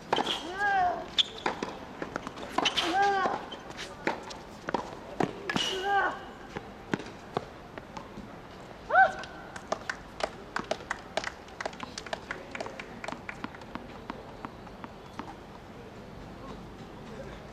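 Tennis on a hard court: a run of sharp knocks from the ball against racket and court, with several short squeaks that rise and fall in pitch in the first half and once more about nine seconds in. Over the last seconds come scattered lighter ball bounces as the server readies the ball.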